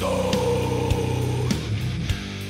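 Old-school death metal band playing: heavily distorted electric guitars and bass with drum hits about every half second, and a held note sliding slowly downward in pitch.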